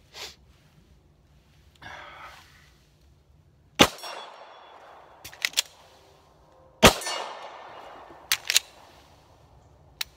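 Two 9 mm pistol shots from a Glock 19, about three seconds apart, each trailing off in a decaying echo. After each shot come two quick sharp metallic clicks as the pistol is handled through the reload.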